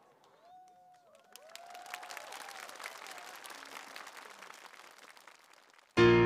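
Audience applauding, with a few cheers and calls. The clapping picks up about a second and a half in and thins out near the end.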